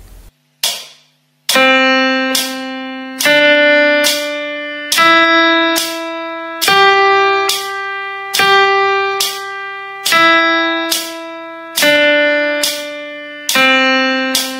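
A plucked, guitar-like instrument plays the practice notes Đồ, Rê, Mi, Son, Son, Mi, Rê, Đồ (C, D, E, G and back) for pupils to sing along to. Each note rings about a second and a half, with a sharp attack, a softer repeat stroke and a decay. The notes climb step by step to the highest and then come back down.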